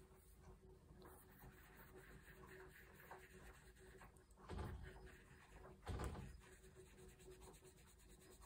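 Very faint rubbing and dabbing of a small ink-blending brush on a paper cut-out, with two slightly louder soft brushing or handling sounds about four and a half and six seconds in.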